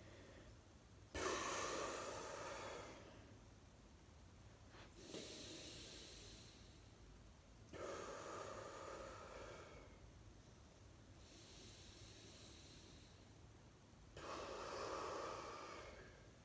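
A man breathing out hard in five long breaths, about three seconds apart, as he draws his belly in during stomach vacuums. The first starts abruptly about a second in; the fourth is fainter.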